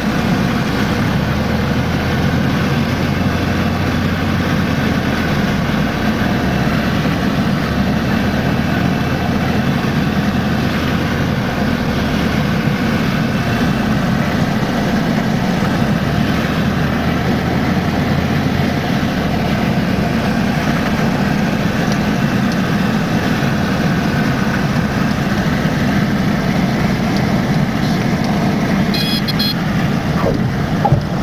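A Piper single-engine light aircraft's engine and propeller running steadily, heard loud inside the cabin on final approach and landing. Its low hum grows stronger and weaker in stretches.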